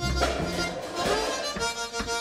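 Blues harmonica played through cupped hands, a short phrase of held notes and chords that change about every half second.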